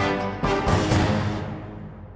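Television programme's ident theme music, ending on a strong hit about half a second in that then dies away.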